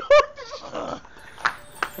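A man retching: a loud, throaty heave right at the start, then quieter gagging sounds.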